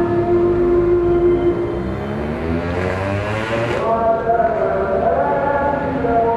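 A voice chanting in long, drawn-out notes that slide slowly down and then rise again, with no break for words.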